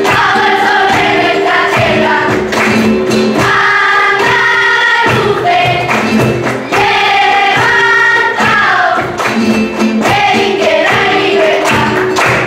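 A children's school choir singing a flamenco song together, accompanied by flamenco guitar, with sharp rhythmic percussive strokes throughout.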